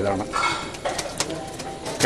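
A bird calling, low in pitch, about half a second in, between a man's words, with a couple of faint clicks about a second in.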